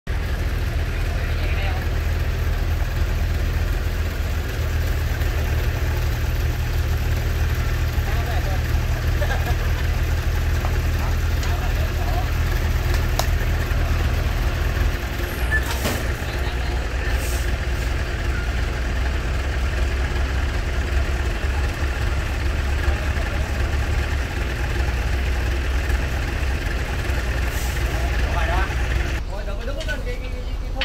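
Diesel engine of a large multi-axle cargo truck running at low speed, a steady low rumble whose pitch shifts a few times as the engine speed changes. There is a brief knock about sixteen seconds in.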